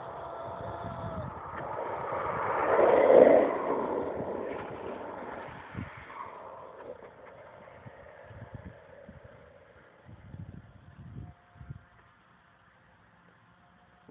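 Wheels of a speedboard, ridden lying down, rolling fast down a tarmac path: the rushing roar swells to a peak about three seconds in as it passes, then fades away down the hill.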